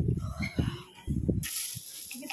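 Glass-beaded bracelets rattling as a hand sifts through a bin of them: a sudden bright, hissy rattle that starts about a second and a half in, after a few soft knocks.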